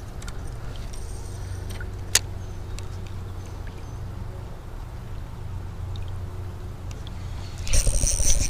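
Steady low rumble of wind on an action camera's microphone, with a few small clicks and one sharp click about two seconds in from handling the spinning rod and reel in a kayak. Near the end comes a sudden, louder rush of noise.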